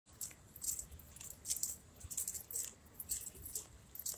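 Light metallic jingling rattle in short bursts, roughly twice a second and unevenly spaced, as of small loose objects shaking with each step of someone walking, over a faint low rumble.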